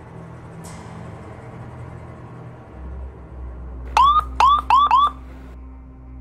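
Electronic beeping: four quick rising chirps within about a second, a little past the middle, over a low steady rumble like a vehicle.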